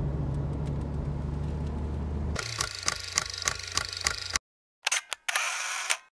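Steady engine and road noise of a convertible driving with the top down. About two and a half seconds in it cuts to a rapid run of camera shutter clicks, about three a second, then after a short silence two more clicks and a brief noisy burst.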